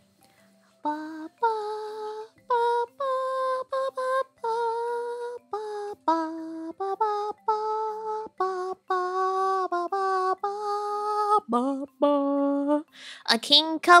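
A woman singing a slow melody in short held notes, with faint background music underneath. Her voice breaks into a wavering laugh near the end.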